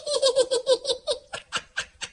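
High-pitched laughter: a fast run of "ha-ha" pulses that slows and fades toward the end.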